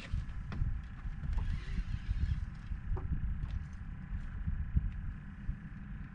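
Uneven low rumble of wind and water around a small open fishing boat, with a few faint clicks while a spinning reel is worked against a hooked trout.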